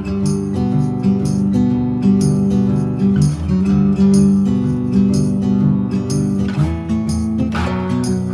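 Instrumental passage of a gentle indie song: acoustic guitar strummed in a steady rhythm over sustained low notes, with no singing.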